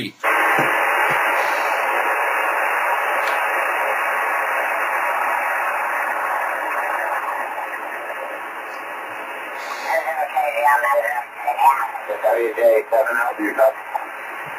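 Hiss from an amateur radio receiver's speaker on the 10 GHz microwave band, confined to a narrow voice band, steady at first and easing off after about eight seconds. From about ten seconds in, a distorted, broken-up voice comes through the hiss: a station's transmission garbled by rain scatter.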